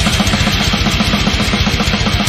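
Heavy metal music: distorted electric guitar over a fast, even pulse of low notes, played loud.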